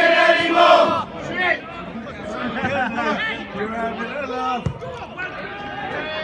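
Football crowd chanting, the chant breaking off about a second in, then many voices talking at once in the crowd.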